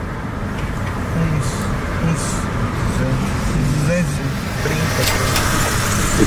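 Steady road and engine noise inside the cabin of a Jaguar car being driven, with a few low murmured voices over it.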